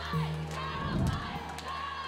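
A held low chord from the closing soundtrack music fades slowly, with crowd shouting and yelling over it.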